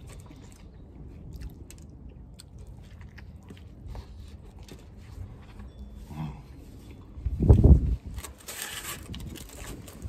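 Close-up chewing and small mouth clicks of a man eating a burger. About seven and a half seconds in comes a loud low burst, the loudest sound here, followed by a short hiss.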